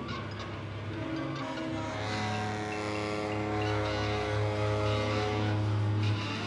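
Live band of saxophone, electric guitar and drums playing: long held notes over a low drone, slowly building in loudness.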